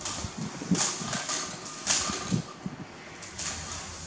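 Woven wicker basket rocking, scraping and knocking against a hard floor as a baby monkey climbs on it. The loudest knocks come about a second and two seconds in.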